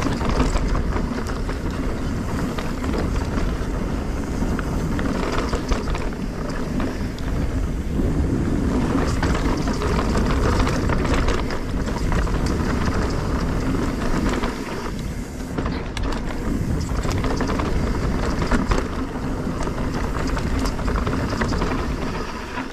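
Specialized S-Works Enduro mountain bike descending a dirt trail: tyres rolling over dirt and rocks, the bike rattling and clattering over bumps, with wind on the camera microphone throughout.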